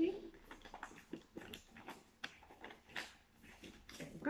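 Brown paper bag and a paper cut-out rustling and crinkling in a run of short crackles as the cut-out is pressed onto the bag with glue.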